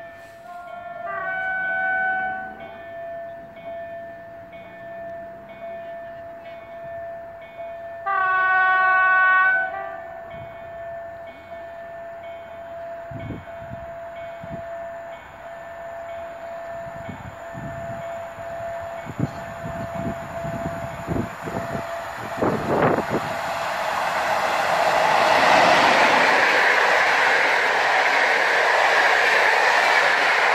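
PKP Intercity EP07 electric locomotive sounding its horn twice as it approaches: once about a second in, and again, louder, about eight seconds in. Then the locomotive and its passenger coaches pass at speed, the rushing rail noise building from about 22 seconds and loudest over the last few seconds.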